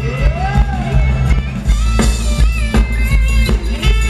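Live band playing upbeat Thai ramwong dance music with a steady beat and heavy bass, with one note sliding up and back down in the first second.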